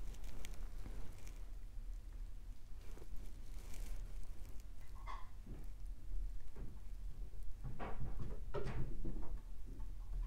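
Oil-paint brush dabbing and dragging on textured canvas: soft, irregular scuffing strokes, busier near the end.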